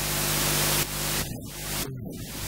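Loud static-like hiss over a steady hum, cutting off sharply just under a second in and returning briefly before building again near the end.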